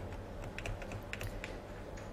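Typing on a computer keyboard: a run of quick, irregular key clicks, as when a bank teller looks up an account.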